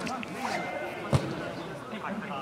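A football struck once: a single sharp thud just after a second in, over scattered voices of players and spectators.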